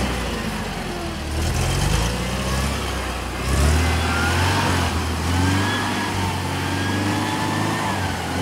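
Steyr-Puch Pinzgauer 710's 2.5-litre air-cooled petrol four-cylinder engine working under load in mud. Its pitch rises and falls as the throttle is worked, and it gets louder about three and a half seconds in.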